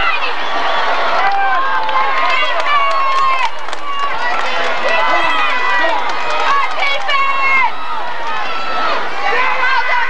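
Football crowd in the stands: many spectators talking and shouting at once close to the microphone, a steady mass of overlapping voices.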